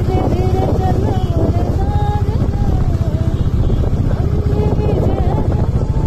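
Royal Enfield single-cylinder motorcycle engine running steadily while riding, with wind rumbling on the microphone.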